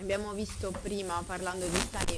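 A person talking, in a voice pitched higher than the one just before. Sharp hissing consonants come near the end.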